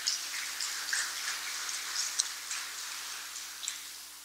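Audience applauding, the clapping thinning out and fading away toward the end, over a faint steady hum.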